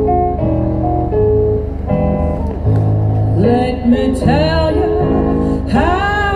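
Live blues song played by a duo through stage speakers: steady held instrumental notes, then a voice singing from a little past halfway in.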